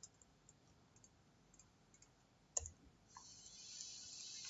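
Faint, scattered clicks of a computer mouse and keyboard while code is selected and moved in an editor, with one louder click a little past halfway. A faint hiss comes in near the end.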